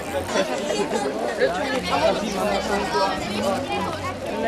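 Overlapping chatter of a group of children talking at once.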